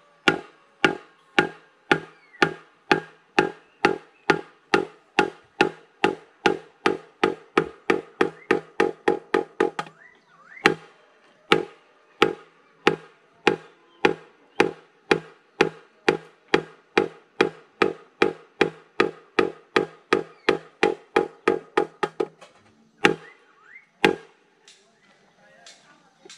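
Hollow, pitched knocks from a bamboo tube worked with a wooden stick inside it, about two a second in a steady rhythm. The knocks break off briefly about ten seconds in, come back a little quicker, and thin out to a few scattered knocks near the end.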